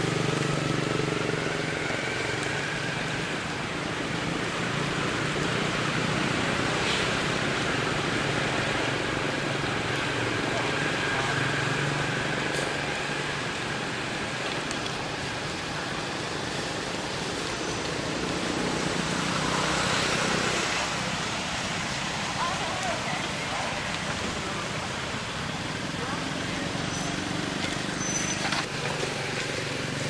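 Outdoor background of indistinct voices and a steady wash of road traffic noise, with a few brief high-pitched tones in the second half.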